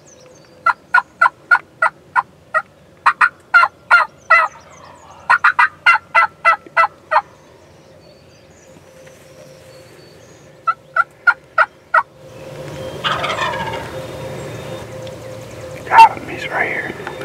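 Wild turkey yelping: four runs of loud, sharp, evenly spaced notes, about three or four a second. Near the end a louder, noisy stretch of rustling rises.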